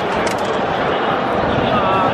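A large crowd of racegoers talking and calling out all at once: a steady, dense hubbub of many voices.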